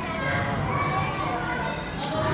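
Children's voices, calling out and chattering over one another, mixed with the general talk of a crowd of visitors.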